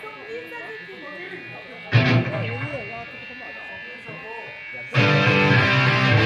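A live punk band between songs: voices over the hum of the amps, a single loud guitar chord about two seconds in that rings off, then distorted electric guitars and bass crash in together about five seconds in as the next song starts.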